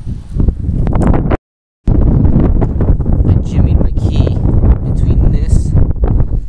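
Wind buffeting the camera microphone as a loud, uneven rumble, cut by a brief dead-silent gap about a second and a half in.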